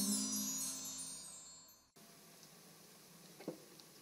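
The final chord of a jazz combo dies away over the first couple of seconds, with a high, shimmering chime-like ringing above it. The sound then cuts off suddenly, leaving faint room tone with one soft knock about three and a half seconds in.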